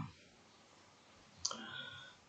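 Near silence, then a single short click about one and a half seconds in, trailing off faintly.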